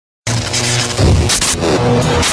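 Cinematic intro soundtrack that starts abruptly: a held synth chord over heavy bass, with a whooshing swell about a second and a half in.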